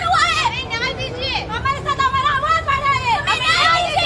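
Women's raised voices calling out, high-pitched and continuous, over a steady crowd murmur.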